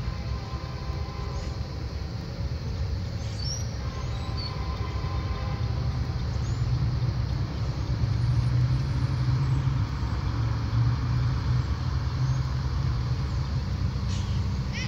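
Diesel locomotives of an approaching freight train rumbling, growing steadily louder as they draw closer.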